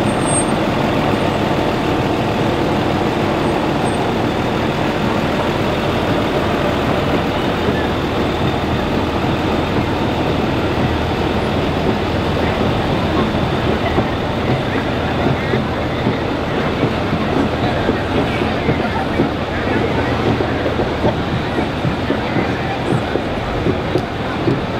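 Street noise along a parade route: a trolley bus's engine running as it passes and pulls away, over a steady murmur of crowd voices.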